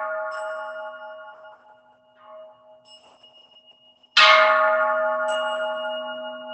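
Large Buddhist temple bowl bell ringing. The ring of a strike made just before dies away over the first two seconds, then the bell is struck again about four seconds in and rings on with a long, steady hum.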